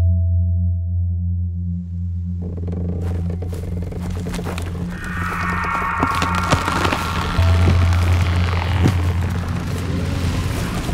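Opening music from the drama's score: a deep, held low note from the start, joined after about two seconds by a crackling texture, with a brighter swell coming in about halfway through.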